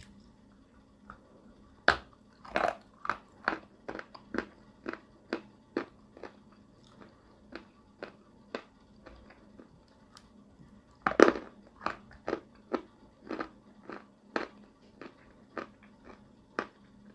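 A dry lump of Turkestan edible clay bitten off and crunched between the teeth. There are two sharp bites, about two seconds in and again about eleven seconds in, and each is followed by a run of crunching chews about two a second.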